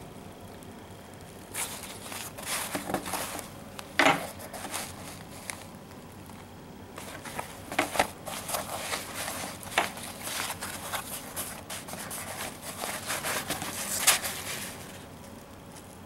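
Nylon gear-roll pouch being handled and turned over: fabric and webbing rustling and crinkling in irregular bursts, with sharper clicks and scrapes, loudest about four seconds in and again near the end.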